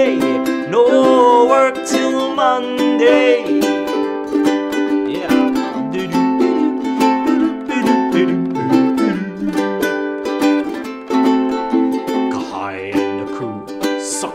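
Acoustic ukulele strummed in a steady rhythm, playing a chord accompaniment. A man's singing voice runs over it for the first few seconds.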